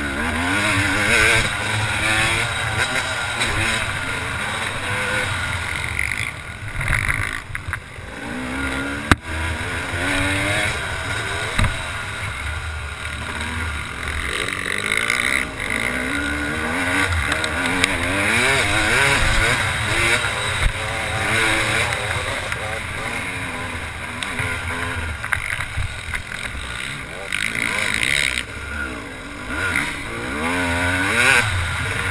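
Yamaha YZ250 two-stroke motocross engine revving hard and dropping off again and again as the bike is raced round the dirt track, its pitch sweeping up and down with each throttle blip and gear change, heard close up from a helmet-mounted camera.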